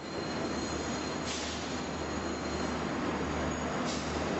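Diesel multiple-unit train idling at a station platform: a steady low engine hum under a broad even rush of noise, with two short hisses, about a second in and near the end.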